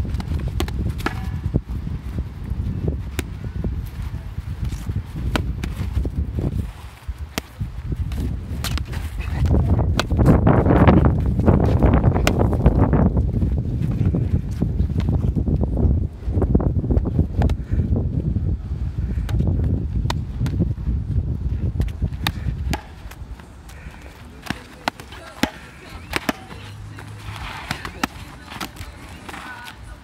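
Foam-padded longsword and shield sparring: scattered short knocks of strikes and footsteps on dry ground, over a loud low rumble that swells about a third of the way in and drops away two-thirds of the way through.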